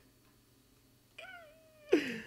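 A single high-pitched, drawn-out vocal cry, meow-like, starting just over a second in and sagging slightly in pitch for under a second, followed right at the end by a quick, loud drop in pitch.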